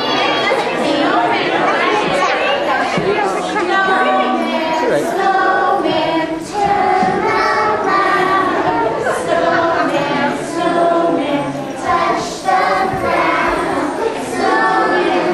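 A group of young children singing together, with children's chatter mixed in.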